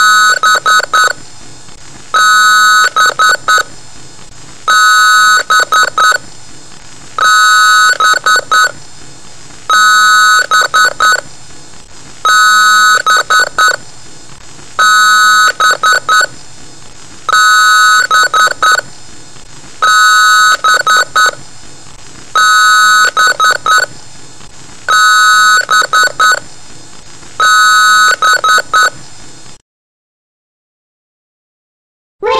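Loud, distorted electronic beep tone repeating about every two and a half seconds, each beep about a second long with a stuttering edge. It cuts off suddenly just before the end.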